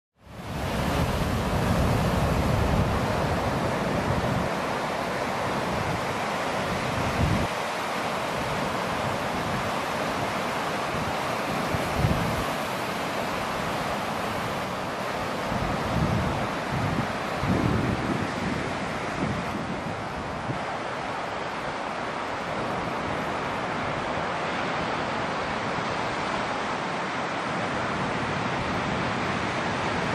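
Ocean surf breaking, a steady rush of whitewater, with wind buffeting the microphone in low gusts, strongest near the start and again around the middle. It fades in quickly at the beginning.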